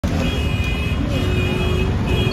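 Street traffic rumble with a repeated high-pitched electronic tone that sounds in pulses of about three-quarters of a second, twice in a row.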